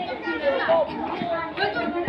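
Children's voices, indistinct speech.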